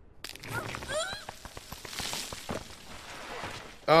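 Soundtrack of an animated episode: loose rock and gravel crunching and scraping as a character slides down a rocky slope, with a short gliding cry about half a second in.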